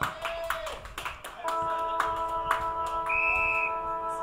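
A held chord of several steady notes, like music or an electronic horn, starting about a second and a half in and lasting to the end, with a brief higher note joining near the end. Scattered sharp claps or taps sound throughout.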